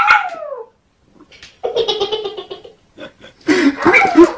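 Kitten meowing: a call falling in pitch at the start, then a longer held meow about a second and a half in. A louder, more broken sound comes near the end.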